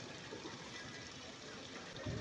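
Faint, steady background noise of a seated gathering, with no distinct event.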